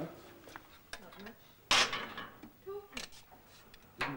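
Metal kitchenware being handled at a kitchen range: a few light knocks, then one loud, brief clatter about two seconds in. A short voice sound follows near the end.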